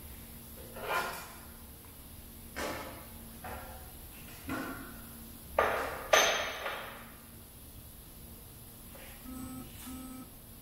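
Sheet metal and the steel beams of a Magnabend electromagnetic bending brake clanking and rattling as a galvanized workpiece is handled: about six separate metallic clanks with ringing, the loudest two a little past the middle. Short repeated beeps come in near the end.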